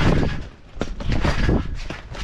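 A trick scooter bouncing on a trampoline: several thumps and rustles close together as the rider lands and jumps, with wind buffeting the action camera's microphone.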